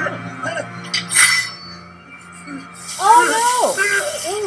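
TV drama soundtrack playing in the room: low ominous music with light metallic clinks, then a loud, strained cry with wavering pitch from about three seconds in.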